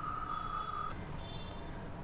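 Quiet room tone with a low hum and a thin, steady high-pitched whine that cuts off about a second in.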